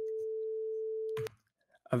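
A single steady electronic tone from a Web Audio API oscillator node routed through a gain node: the first bare-bones attempt at a synthesized mosquito, a very annoying buzz. It cuts off suddenly about a second and a quarter in.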